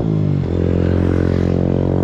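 A motor vehicle engine running nearby with a steady drone, its pitch dipping briefly about half a second in.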